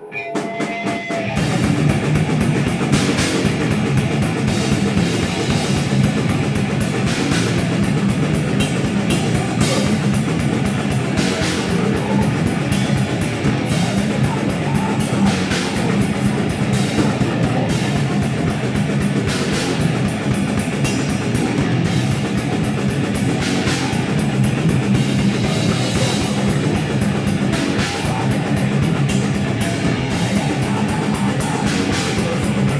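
Live metal band playing loud, with distorted electric guitar and a drum kit hammering under regular cymbal crashes. The song kicks in about a second in.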